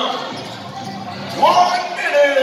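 A basketball bouncing on an indoor court, in a large gym's echo. A voice calls out about a second and a half in.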